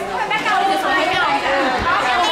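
High-pitched voices talking and chattering.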